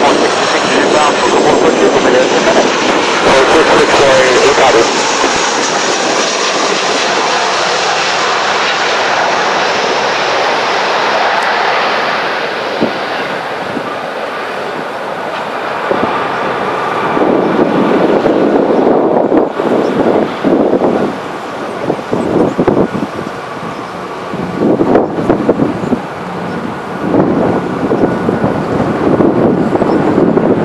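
Jet airliner engines running on the runway, a loud roar with a high whine that slowly falls in pitch over the first ten seconds. In the second half the sound turns uneven and gusty.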